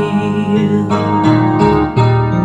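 Electric keyboard playing held chords to accompany a worship song, heard through Zoom call audio.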